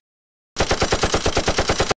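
Dubbed sound effect of rapid automatic gunfire: one burst of about ten shots a second, lasting about a second and a half, that starts about half a second in and cuts off abruptly.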